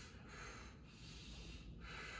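Faint breathing from a man winded after a high-intensity workout: about three quick breaths in a row, with no voice.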